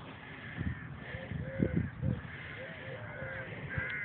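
A string of short, repeated bird calls, each rising and falling, with a few dull low thumps; the loudest thumps come a second and a half to two seconds in.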